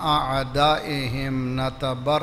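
A man's voice chanting Arabic recitation in a melodic, drawn-out style, holding long notes, with a brief pause near the end. This is the chanted Arabic opening of a sermon: prayers and Quran verses recited before the address proper.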